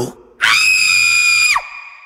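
A young woman's high-pitched scream of fright, held steady for about a second and then breaking off with a sharp downward drop.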